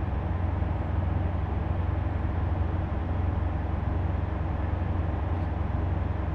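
Steady low vehicle engine hum with an even background rumble, unchanging throughout.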